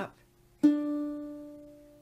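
A single note plucked on a baritone ukulele's second (B) string at the third fret, sounding a D, about half a second in, then ringing and fading slowly. It is one step in walking up the string fret by fret to find the E for tuning the first string.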